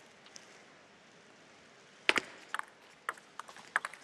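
Table tennis ball clicking off the rackets and the table as a rally gets under way. After two quiet seconds comes one loud double click, then a quick run of lighter clicks, a few each second.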